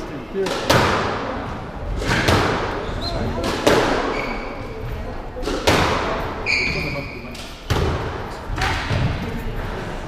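Squash rally: sharp cracks of the racket striking the ball and the ball hitting the walls, about a dozen at irregular intervals, each echoing in the court. A few brief high squeaks, shoe soles on the wooden court floor, come in the middle.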